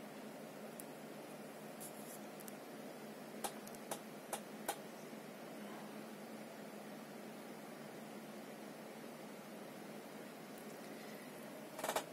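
Faint steady whir of an air-cooled PC's fans while the CPU renders under full load, with a few light clicks about three and a half to five seconds in.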